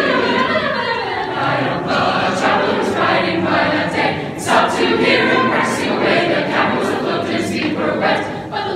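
Mixed-voice chamber choir singing a lively passage, the voices punctuated by crisp, rhythmic consonant accents.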